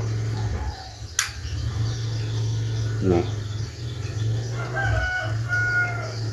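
A rooster crowing once, faintly, near the end, over a steady low hum. A single sharp click about a second in.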